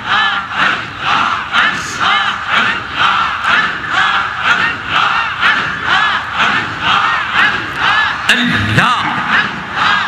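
Large crowd of men chanting dhikr together in a quick, steady rhythm, their voices rising and falling with each repeat, amplified through the loudspeakers.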